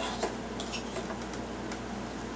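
Light, scattered clicks and taps of hard plastic toy parts as a Transformers Animated Optimus Prime deluxe figure and its axe pieces are handled.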